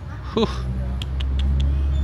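A steady low rumble that starts about half a second in and cuts off suddenly at the end, with a few faint clicks over it.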